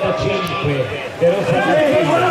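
Speech: a man's voice talking.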